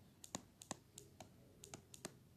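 Faint stylus tip tapping and clicking on a tablet's glass screen while handwriting, about nine short, irregular clicks.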